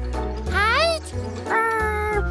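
A squeaky cartoon voice makes wordless sounds over children's background music: one call rises and falls, then a note is held near the end.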